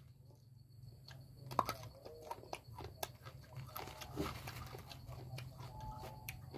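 A person chewing a mouthful of food close to the microphone, with faint, irregular wet clicks and lip smacks.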